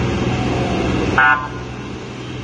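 A vehicle horn gives one short toot about a second in, over the steady low hum of an idling engine.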